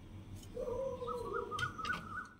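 A bird calling: one drawn-out call beginning about half a second in, with a steady low tone and a wavering higher one above it.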